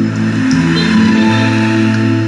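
Instrumental passage of a Vietnamese song played through a Yamaha AX-570 integrated amplifier and its speakers, with long held notes.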